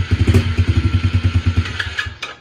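Yamaha TT-R110 dirt bike's small four-stroke single-cylinder engine running with a rapid low putter just after being started, then cutting out right at the end. It was started cold without the choke, which it seems to need.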